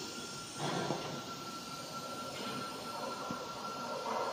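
CNC router spindle running with a steady high-pitched whine, with a rush of machine noise coming in about half a second in.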